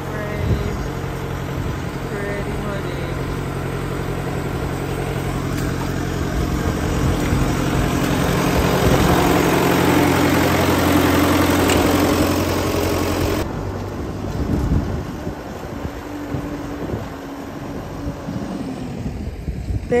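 Belarus tractor's diesel engine running steadily, growing louder towards the middle, then cut off abruptly about thirteen seconds in, leaving quieter, uneven outdoor noise.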